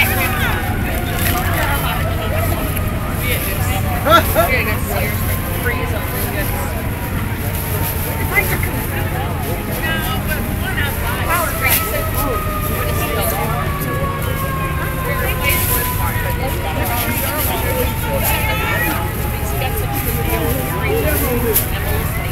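A siren slowly winding down in pitch, starting again with a quick rise about eleven and a half seconds in and falling once more, over a low engine rumble and crowd chatter.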